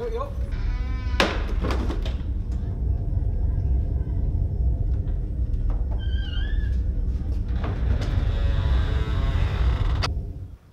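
Bass-heavy hip-hop backing music with a steady deep low end and wordless vocal sounds gliding in pitch.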